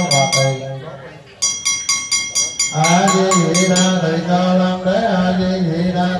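A Buddhist monk chanting on a held pitch, with a small metal ritual bell rung rapidly at about four strokes a second. Both stop just before a second in. The bell starts again alone about a second and a half in, the chanting rejoins near three seconds, and the bell stops about a second later while the chanting goes on.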